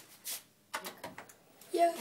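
A few short clicks of push buttons being pressed, most of them bunched together about a second in.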